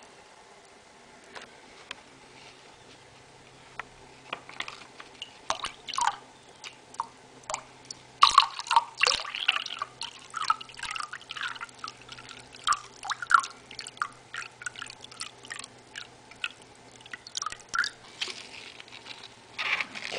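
Bleach dribbling and dripping into a glass measuring cup in irregular drops and small splashes, poured a little at a time to reach a set weight. The dripping begins about four seconds in and is thickest through the middle.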